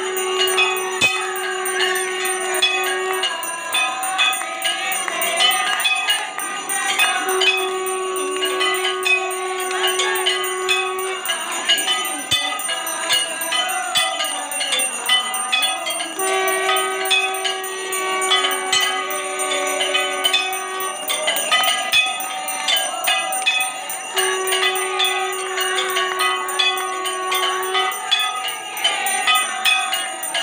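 Temple bells ringing fast and continuously during an aarti. A long, steady, held note sounds four times over the bells, each lasting about four seconds.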